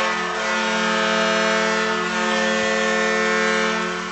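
Hockey arena goal horn sounding one long, steady blast that signals a home-team goal, fading out near the end.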